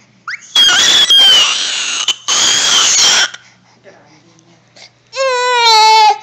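Baby shrieking loudly: two long high-pitched shrieks in the first half, then a pitched wail that falls slightly near the end.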